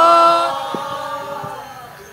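A sinden, a Javanese female gamelan singer, holds one sung note into a microphone. It fades away over about the first second and a half.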